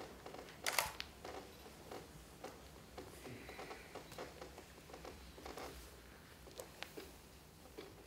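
Bare-footed dancers moving on a stage floor: scattered light knocks, slaps and rustles of hands, feet, bodies and clothing against the boards, the loudest a sharp knock just under a second in, over a low room hum.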